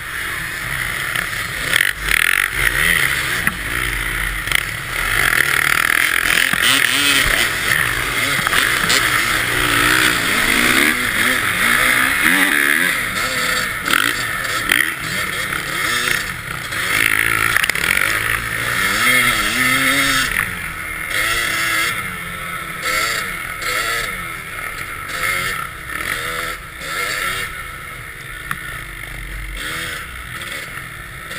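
Dirt bike engines revving up and down as the bikes are ridden through snow, the pitch repeatedly climbing and falling; quieter over the last several seconds.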